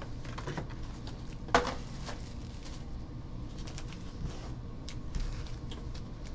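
Foil trading-card packs being handled and set down on a table: light scattered taps and clicks, with one sharp click about a second and a half in, over a low steady hum.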